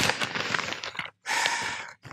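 Rustling of a shopping bag being rummaged through, in two bursts: one lasting to about a second in, a second starting shortly after and stopping near the end.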